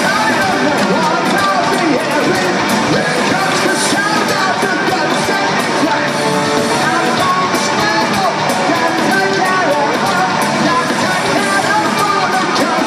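Heavy metal band playing live and loud: electric guitars and drums, with a singer's voice over them.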